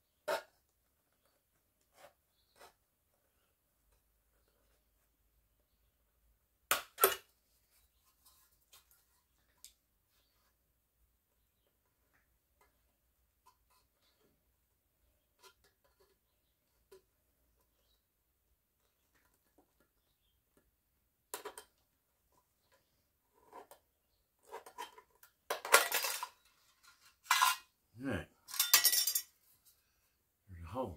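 Thin sheet metal of a tin can being cut with a multitool's knife blade: a few scattered light clicks and scrapes, then a run of louder metallic clinks and rattles in the last several seconds.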